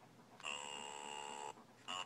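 Electronic baby toy playing a beeping tune: one note held for about a second, starting half a second in, then quick short notes again near the end.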